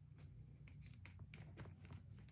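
Near silence over a steady low hum, with a scattering of faint clicks from a laptop as a file is closed without saving.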